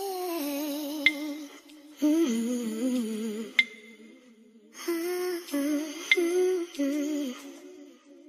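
Background music: a slow song whose pitched melody line runs without words here, with a sharp percussive click about every two and a half seconds.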